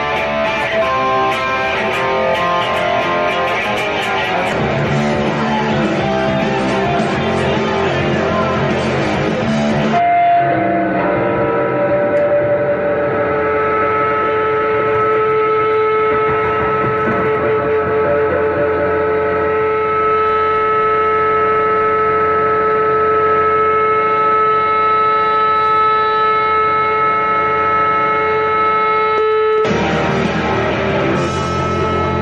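Distorted electric guitar played for about ten seconds, then sustained guitar feedback: several steady pitched tones held unbroken for about twenty seconds.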